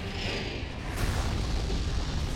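Film sound effect of a spaceship explosion's blast wave striking a ship's energy shields: a deep low rumble with a sharp crack about a second in, under a dramatic music score.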